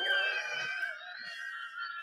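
A woman's long, high-pitched squeal of laughter, held on one pitch and falling slightly.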